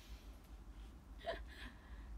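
A young woman's brief vocal sound, a short breathy 'ah' falling in pitch, about a second in, in a pause between sentences. A faint low hum runs underneath.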